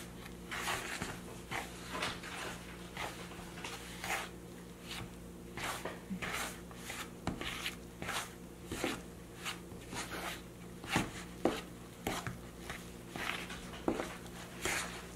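A fork stirring and scraping thick pizzelle batter in a mixing bowl, working the dry flour into the wet mixture. It makes a steady run of soft scraping strokes, about two a second, with a couple of sharper knocks about three-quarters of the way through, over a faint steady hum.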